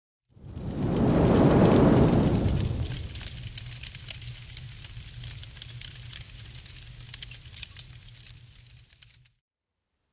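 Logo-intro sound effect: a deep swell in the first two seconds, then a steady fine crackle like burning embers over a low hum, fading and cutting off about nine seconds in.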